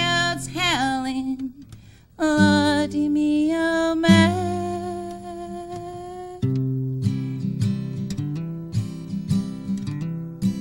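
Harmonica in a neck rack playing bent, then held, notes over a strummed acoustic guitar in a country-folk song, with a brief gap about two seconds in. The harmonica stops about six seconds in, leaving the guitar strumming chords.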